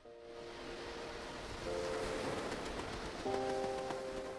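Background music of sustained chords that change twice, over a soft whooshing wash of noise that swells in during the first couple of seconds.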